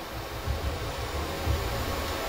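Steady background noise of the playing hall: an even hiss with a low rumble that swells a few times.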